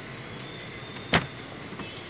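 Steady low background hiss with a single sharp click about a second in.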